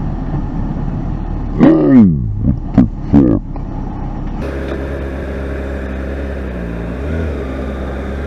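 Honda CBR600RR's inline-four engine running at road speed under a steady rush of noise at the helmet microphone. About two seconds in, a loud voice exclaims over it with a steeply falling pitch, several times over about a second and a half.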